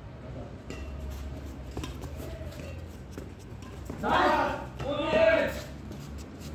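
Men's voices calling out twice about four and five seconds in during a doubles badminton rally, in a large hall. Earlier there are a few faint sharp clicks of rackets hitting the shuttlecock over a steady low hum.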